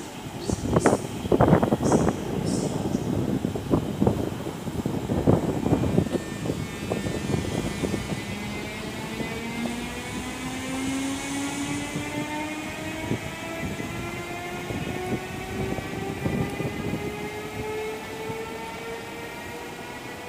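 Siemens class 18 electric locomotive pulling away with a train of double-deck coaches. Over the first few seconds there is a run of loud clanks and knocks. After that, its traction drive gives a whine of several tones that climbs steadily in pitch as the train gathers speed.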